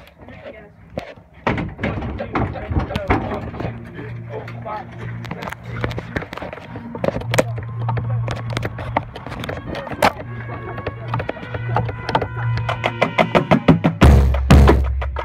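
Voices talking, with close knocks and clatter from the marching bass drum rig the microphone sits on. From about ten seconds in, band instruments hold a steady chord, and quick tapping builds toward the end.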